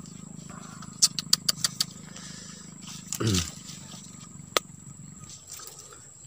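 A quick run of about six sharp clicks about a second in, a short falling grunt-like vocal sound near the middle, and one more single click, over a steady high-pitched insect drone.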